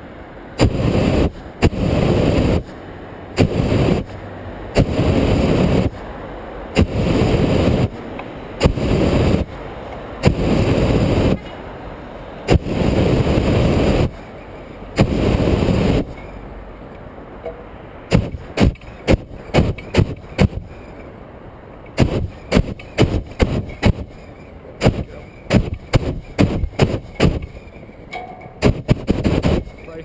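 Hot air balloon's propane burner fired in a series of about nine blasts, each from half a second to two seconds long, during the low approach to landing. In the second half the burner is silent and a run of quick, sharp clicks and knocks follows instead.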